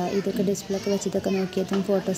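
Speech only: people talking, a fairly high-pitched voice in quick, broken-up syllables.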